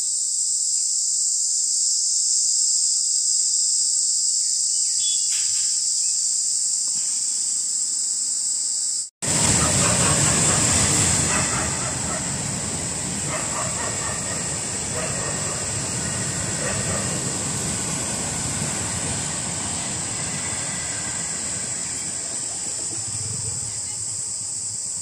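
A loud, steady, high-pitched chorus of tree insects (jhingur) runs throughout, described as making 'so much noise'. After a sudden cut about nine seconds in, a freight train passing the level crossing adds a heavy rumble and clatter, loudest for the first few seconds and then easing.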